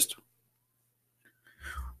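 The end of a man's spoken phrase, then a pause of near silence, then a short, faint breath in near the end, just before he speaks again.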